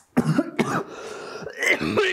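A man coughing several times in a rough fit, with throat clearing.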